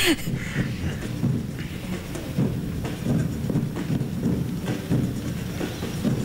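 Outdoor ambience of a large mass of marathon runners: a steady, busy hubbub of footfalls and distant voices with no clear words.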